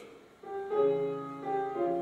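Piano accompaniment to an opera aria: after a brief hush, sustained piano chords enter about half a second in and move through a few changes of harmony.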